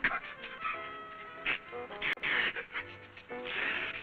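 A man's sneeze building up: a few gasping, catching breaths, the last one longer and louder near the end, over background film music.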